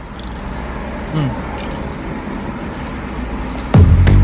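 Steady low rumble inside a car cabin while a man drinks from a can. Just before the end, loud music with a heavy bass comes in suddenly.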